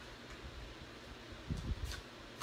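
Quiet room hiss with a brief soft knock or two near the end, from stamping supplies being handled on the tabletop.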